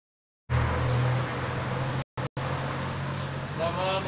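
Steady low engine hum and road traffic noise, with the sound cutting out twice briefly just after two seconds; a man's voice starts near the end.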